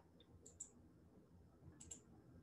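Faint computer mouse clicks: two quick double-clicks, about a second and a quarter apart.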